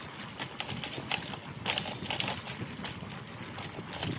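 An irregular clatter of hard clacks and knocks, a few a second, over a steady hiss.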